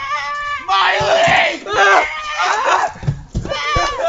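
Several people shouting and screaming over one another, with no clear words, and a few dull knocks about three seconds in.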